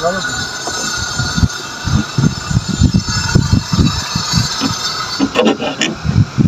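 A hand-held hacksaw blade sawing through the wall of a plastic water tank, in quick back-and-forth strokes, about three to four a second.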